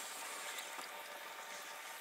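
Faint, steady hiss of background noise with no distinct sounds in it.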